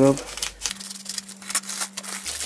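Scissors snipping open a plastic mailer bag, with the plastic crinkling and crackling in short, irregular sharp bits as the bag is cut and handled.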